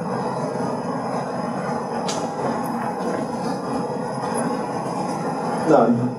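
A steady low rumbling noise with no clear pitch, holding an even level, with a single faint click about two seconds in.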